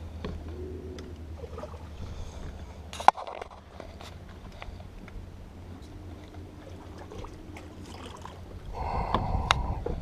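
Minn Kota electric trolling motor running with a low hum and a faint steady whine, water against the boat's hull, and one sharp knock about three seconds in.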